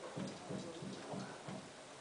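A series of soft, low taps or knocks, about three a second and not evenly spaced, over faint room noise.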